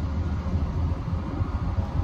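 Duramax diesel truck engine running with a low, steady rumble, heard from inside the cab.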